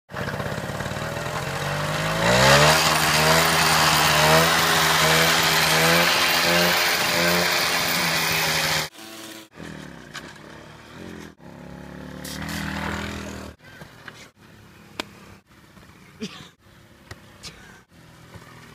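A 50cc Kinetic moped's two-stroke engine, heard close up, revs up about two seconds in and is held at high revs until the sound cuts off abruptly about nine seconds in. After that the engine is much fainter as the moped is ridden, rising once around twelve to thirteen seconds, with a few sharp clicks near the end.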